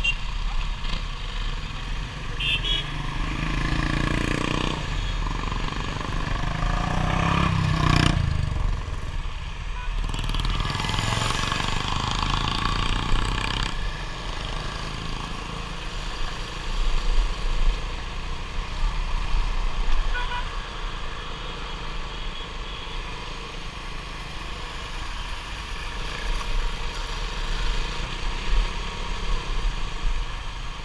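Motorcycle engine running under way in town traffic, heard from the rider's own bike, with the engine note rising and falling several times in the first half as it accelerates and eases off. A couple of short horn beeps near the start and a sharp thump about eight seconds in.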